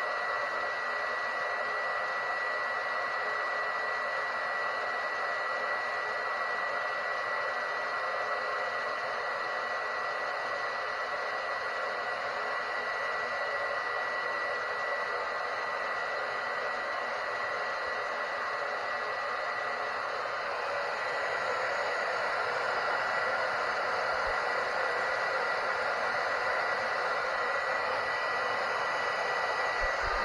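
Hair dryer running steadily: an even rush of air with a thin, high, steady whine, a little louder from about two-thirds of the way in. It is blowing hot air on a heat detector to make it trip.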